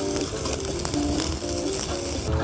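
Slices of pork belly and mushrooms sizzling on a wire mesh grill: a dense, steady hiss.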